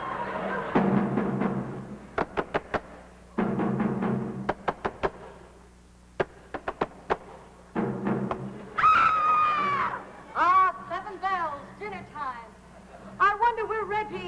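Jungle drums as a stage sound effect: three short, low drum rolls, each followed by a group of sharp single strikes. In the second half a voice takes over with long, gliding cries.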